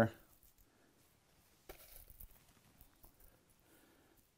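Faint soft rustles and a light tick about two seconds in: fingers sprinkling small milkweed (butterfly weed) seeds onto moist planting mix in a pot, in an otherwise quiet room.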